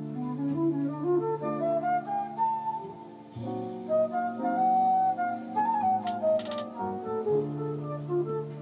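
Jazz recording of an alto flute playing a flowing melody of held notes that climb and fall, over sustained low accompaniment.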